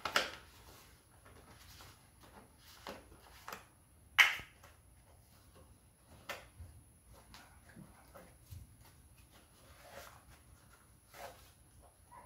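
Quiet, scattered clicks and rustles of rubber-gloved hands handling a plastic bottle of metal-prep acid, with one sharper click about four seconds in.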